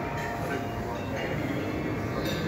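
Indistinct talking over a steady, noisy room hubbub.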